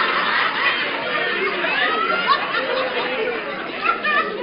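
Live audience laughing and chattering, many voices at once, slowly dying down.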